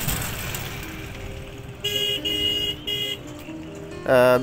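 A motorcycle passing close and fading away, then a vehicle horn beeping three times in quick succession around the middle.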